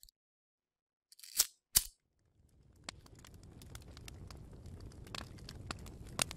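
Logo-intro sound effects: two short sharp snaps about a second and a half in, then a low rumble that slowly swells, scattered with crackling clicks.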